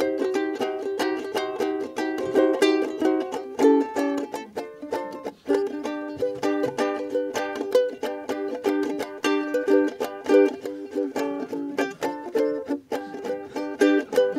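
Ukulele strummed in quick, even strokes, playing the instrumental opening of a bouncy song before the singing comes in.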